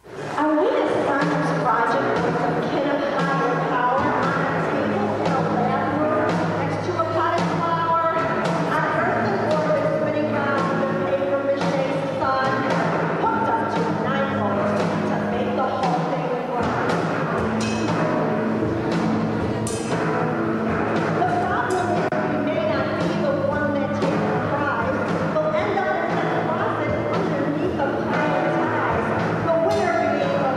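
Live rock band playing: a woman singing over a drum kit and electric guitar. The music starts suddenly about half a second in, with steady drum hits throughout.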